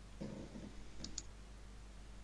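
Two quick, light clicks about a second in, over a low steady hum, with a brief faint murmur just before them.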